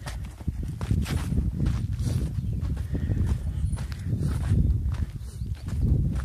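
Footsteps of people walking on a sandy, rocky dirt trail at a steady pace, over a low rumble.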